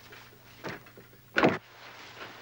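A door being shut, with a faint knock and then a sharp, much louder thud about a second and a half in.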